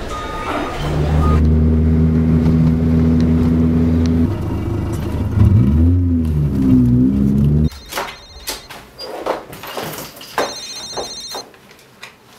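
Film score: a deep, loud synthesized drone with a swooping bend in pitch, cutting off suddenly about two-thirds of the way through. After it come scattered clicks and knocks, and two short bursts of a high electronic trill, a phone ringing.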